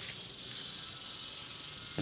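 Steady background ambience with a faint, even high-pitched hiss; no distinct events.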